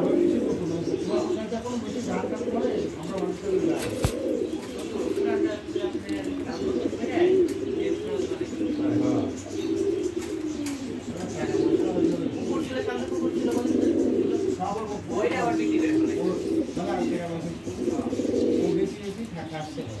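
Domestic pigeons cooing in low, warbling, overlapping coos that keep going, with a single sharp click about four seconds in.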